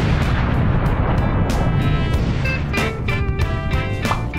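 An explosion sound effect: a sudden blast decaying into a long low rumble. Music with a steady beat and sustained tones comes in over it about a second in.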